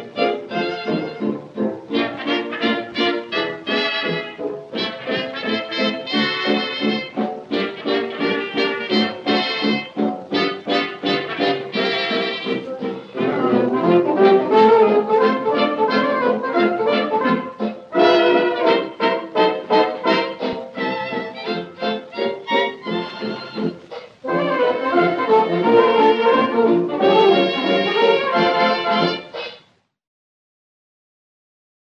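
Dance-band music with brass to the fore, played from an old Durium gramophone record with a dull, narrow old-recording sound. It gets louder about halfway, dips briefly, then stops abruptly just before the end.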